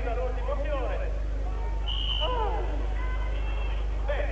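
Voices talking in the background over a steady low hum, with a brief high tone about two seconds in.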